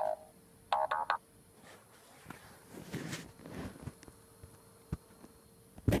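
A couple of short voice sounds about a second in, then mostly quiet with a soft rustle around the middle and a sharp click near the end.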